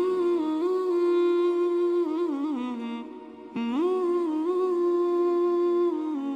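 A single voice humming a slow, wordless melody: long held notes with ornamented turns, a brief break about three seconds in, then a rise back to another long held note.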